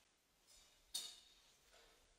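Near silence in a small chapel, broken about a second in by one sharp clink with a short, bright ring that fades within half a second.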